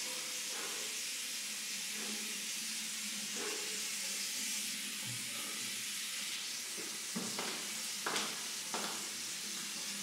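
Tap water running steadily into a bathroom sink, a continuous hiss, with a few short sharp splashes or knocks in the second half.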